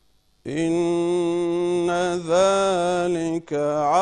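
A man recites the Quran in Arabic in a melodic chant, holding long drawn-out notes that rise and fall in pitch. It begins about half a second in after near silence and breaks off briefly for a breath near the end before carrying on.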